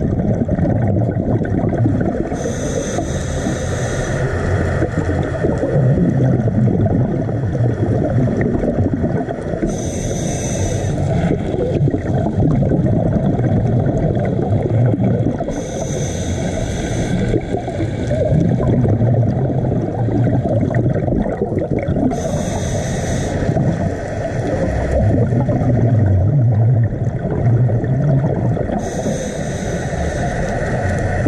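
Underwater sound of scuba breathing through a regulator: a high hiss about every six or seven seconds, five times, over a constant low rumble of water and bubbles.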